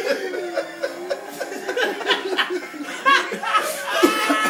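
Chuckling and laughter, with short broken chortles and the loudest burst about three seconds in.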